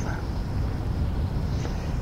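Steady low rumble with faint hiss: the background noise floor of a small audio cassette recorder's tape, heard in a pause between words.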